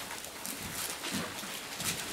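Bible pages being flipped and turned, a quick series of short papery rustles with a few soft low bumps.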